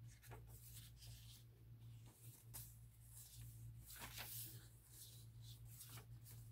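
Faint paper rustling as the pages of a handmade junk journal made from an old book are turned and brushed by hand. There is a run of soft swishes, the loudest about four seconds in, over a steady low hum.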